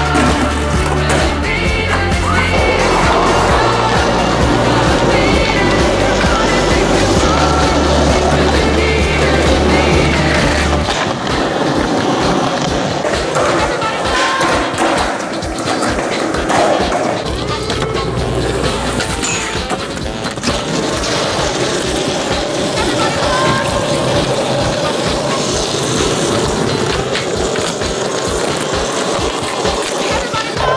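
Skateboard wheels rolling on concrete, with the clacks of board tricks and landings, mixed with music. A heavy bass line plays for the first third and then drops out, after which the sharp clacks stand out more.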